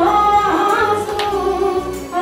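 A group of women singing a devotional song together, one voice leading through a microphone and PA, with long held notes that glide between pitches.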